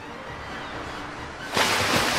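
Low, pulsing string music; about one and a half seconds in, a loud splash of a rug-wrapped body dropped into the sea cuts in and carries on as a long rush of water.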